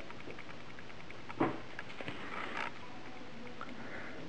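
Fingertip pressing and twisting a small glued walnut dot plug into its drilled hole in a wooden guitar neck: one sharp tap about a second and a half in, then a few faint ticks and a brief scuffing rub, over faint room noise.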